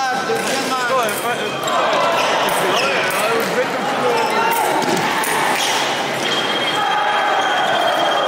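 Many voices echoing in a large fencing hall, with stamps and footfalls on the pistes. A steady high electronic tone comes in about six seconds in and holds.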